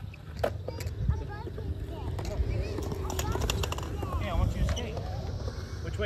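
Skateboards on a concrete skatepark: a steady low rumble of wheels rolling, with sharp clacks and knocks of boards scattered throughout, and voices in the background.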